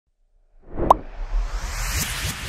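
Logo intro sound effect: near silence for about half a second, then a sharp pop just under a second in, with a whoosh and low rumble swelling after it.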